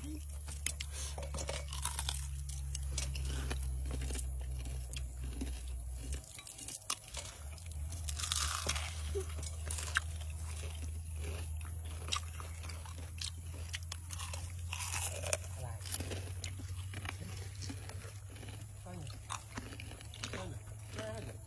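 Someone biting and chewing crunchy fried leaves, with many small irregular crunches. A steady low hum runs underneath and drops out briefly about six seconds in.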